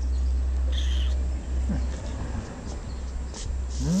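A domestic cat giving short rising calls, one near the middle and a stronger one near the end, with a brief high chirp about a second in. A steady low rumble runs under the first second and a half.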